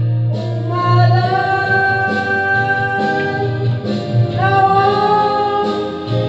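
Background music with singing: long held sung notes over a steady low bass line.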